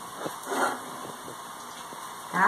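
Light handling sounds of a small paper-covered box being pressed and smoothed by hand while glue is set: a few faint taps and a short rustle about half a second in, over a steady faint hiss.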